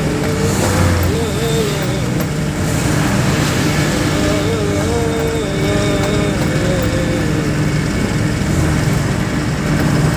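Truck engine and road noise heard from inside the cab while driving, steady throughout, with a wavering voice-like tone over it at times.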